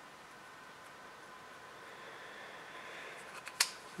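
Faint handling, then a quick cluster of clicks near the end, one of them sharp, as the segments of a Wiha LongLife composite folding ruler are folded shut.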